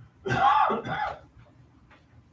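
A person clearing their throat in two short parts.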